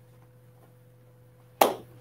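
Quiet room tone with a faint steady hum. Near the end comes a sharp onset, and a man's voice begins.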